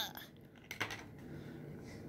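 A few brief plastic clicks and taps as small Shopkins gift-box toy containers and their clear plastic wrapper are handled and pulled apart.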